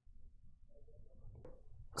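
Faint room tone, with a single faint click about one and a half seconds in.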